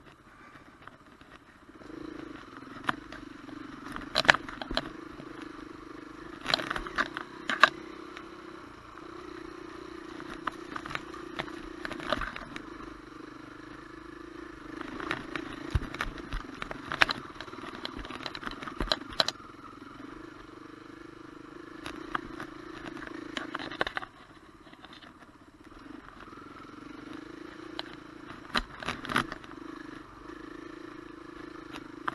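Dirt bike engine running while riding a rough dirt trail, its note rising and falling a little with the throttle. It is quieter for the first couple of seconds and dips briefly later on. Frequent sharp clacks and knocks from the bike jolting over the ground are heard throughout.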